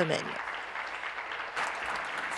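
Applause from a chamber of legislators: many people clapping together in a steady patter that follows the last spoken word.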